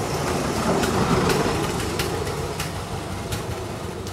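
Auto-rickshaw (tuk-tuk) engine running as it passes close by, loudest about a second in and then fading, with a few sharp clicks over it.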